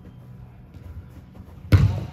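A low background hum, then about three-quarters of the way in a single loud thud of a football struck hard, echoing in a large indoor hall.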